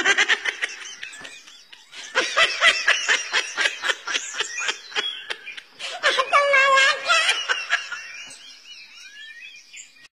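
A person laughing hard in rapid, high-pitched bursts, then a drawn-out high vocal squeal about six seconds in, fading toward the end.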